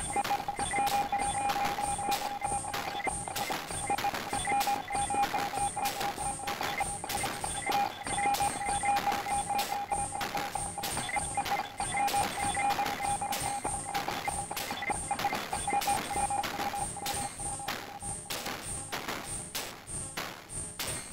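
Eurorack modular synthesizer patch of Moog DFAM, Mother-32 and Moffenzeef GMO playing: a rhythmic percussive pattern of about three hits a second with short high blips, over a steady held tone that fades out near the end.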